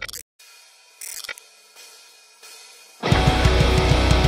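After about three seconds of faint, crackly noise, a metalcore band comes in suddenly at full volume: distorted electric guitars, bass guitar and drum kit with a fast, steady kick-drum beat and cymbals.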